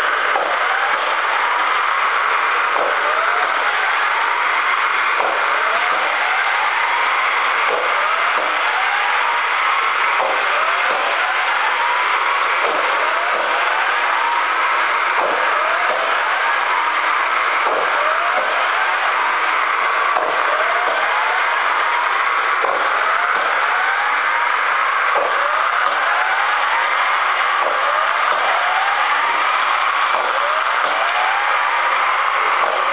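K'nex toy roller coaster running: a steady plastic whirring and rattling, with a rising whir that repeats about once a second.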